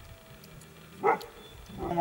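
A single short animal call about a second in, against a quiet background. A voice begins near the end.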